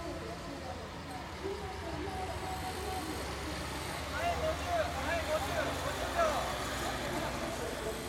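Several voices call out loudly for a couple of seconds from about halfway in, as the racing cyclists pass. A low, steady rumble runs underneath.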